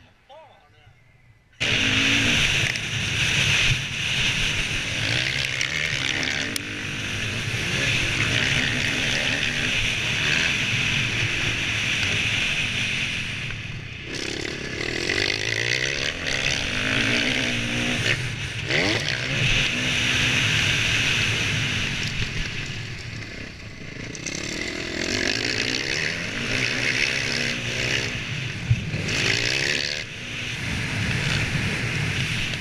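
Motocross bike engine ridden hard on a dirt track, revving up and down repeatedly through the throttle and gear changes, heard from a helmet-mounted camera with wind noise over the microphone. It starts abruptly about a second and a half in and eases off briefly twice.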